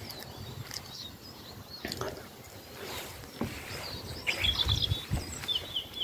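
Small birds chirping in the background, clearest in the last two seconds, over faint low rustling and a few light knocks.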